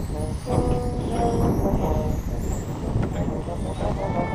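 Marching drum corps playing: short held brass notes over the drumline, under a heavy low rumble.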